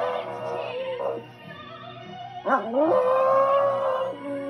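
A West Highland white terrier puppy howls along with singing from a musical on the TV. A long held note breaks off about a second in, and a new one starts with a rising swoop about two and a half seconds in and holds.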